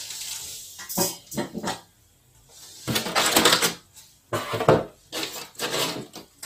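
Crumpled brown packing paper rustling and cardboard boxes being shifted and knocked as hands rummage in a large shipping box, in several short bursts with pauses between.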